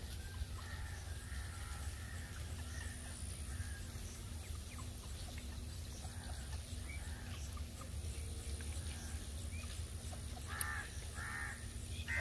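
Birds calling a few times, faintly at first, then two calls close together near the end, over a steady low rumble.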